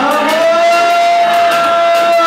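Siren-like wail in the DJ's dance music: one pitched tone that glides up, then holds steady, with the bass beat dropped out beneath it.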